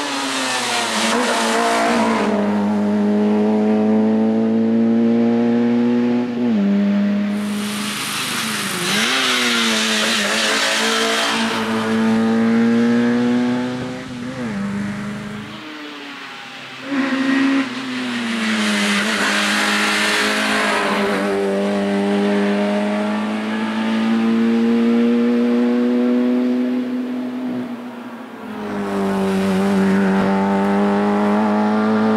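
Peugeot 205 Rallye's 1.3-litre four-cylinder race engine revving hard, its pitch climbing through each gear and dropping sharply at the shifts and lifts for the hairpins. The sound turns louder and harsher twice as the car passes close.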